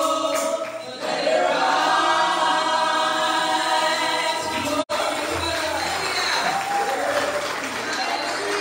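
Worship team and congregation singing a gospel worship song together. A held sung chord breaks off about a second in, then looser singing follows, and the sound drops out for an instant just past halfway.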